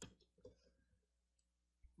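Near silence: a few faint clicks in the first half second, then only room tone.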